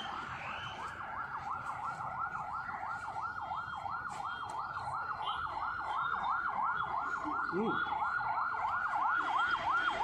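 An emergency vehicle's siren in a fast yelp, its pitch sweeping up and down about four times a second, growing louder toward the end.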